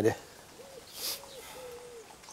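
A pigeon cooing in the background: a few soft, low hooting notes, the last one held longer. A brief soft hiss comes about halfway through.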